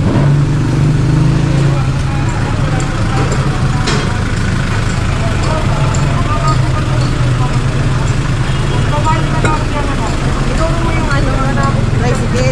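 A motor vehicle engine running steadily at idle, a continuous low hum, with people talking over it in the latter part.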